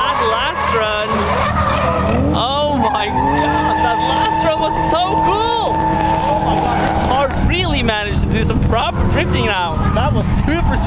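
Drift cars on the track: tyres squealing in repeated rising-and-falling chirps, with one long steady squeal lasting several seconds in the middle, over engines running.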